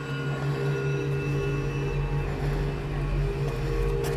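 Film score: a sustained, steady drone of held low tones that starts suddenly, with a deep rumble building underneath from about a second in.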